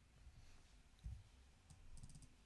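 Near silence: room tone with a few faint clicks and a soft low thump about a second in.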